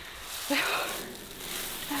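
Rustling of clothing and grass as a person starts walking through a grassy field, loudest for about a second after half a second in.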